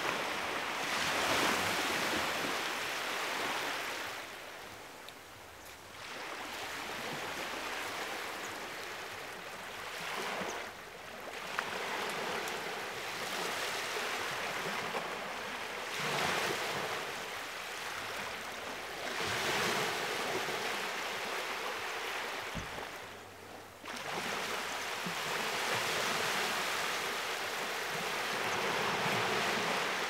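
Small sea waves washing in, the surf swelling and falling back every few seconds.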